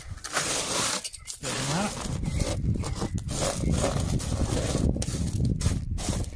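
Fingers raking and scraping wet sapphire wash gravel across a sorting table: a continuous gritty rattle and scrape of small stones being spread out.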